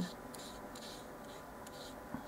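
Faint scratching of a paintbrush stroking white paint onto a small paper miniature baking pan.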